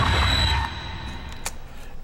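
Soundtrack of a homemade zombie short film: a loud, noisy stretch that breaks off about half a second in, then a quieter lull with a single sharp click near the end.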